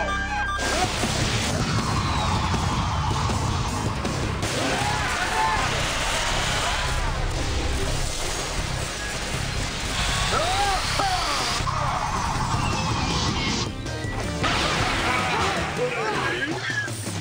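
Fight-scene soundtrack of a live-action TV action series: music with a steady beat mixed with crash and impact sound effects and short shouts.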